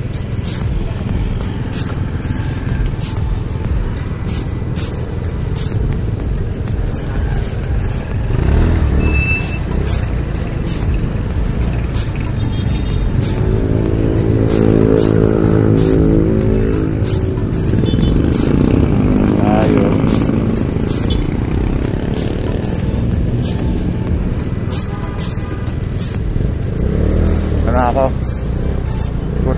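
Road traffic at an intersection: cars passing close by, one engine's drone rising and falling in the middle as a car crosses in front. Near the end a scooter engine revs up as it pulls away.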